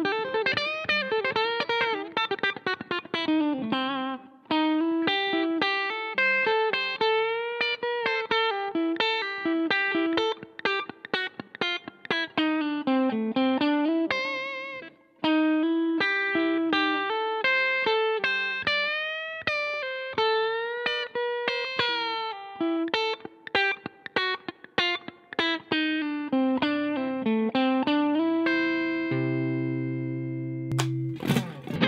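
Stratocaster-style electric guitar played with hybrid picking, pick and fingers together, running a fast lick of single notes. There are brief breaks about four and fifteen seconds in, a note shaken with vibrato just before the second break, and it closes on longer held notes.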